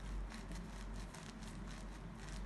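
Handling noise: faint rustling and many small clicks as a hand holds and shifts a knit sneaker, over a low steady hum.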